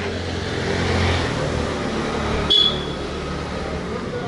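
Street traffic noise with a motor vehicle engine running close by as a steady low hum, and a short high-pitched beep about two and a half seconds in.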